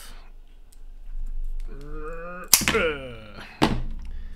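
Side cutters snipping through a headphone cable with one sharp snap about two and a half seconds in, followed a second later by a second sharp click. A man's wordless hum is heard just before and after the snap.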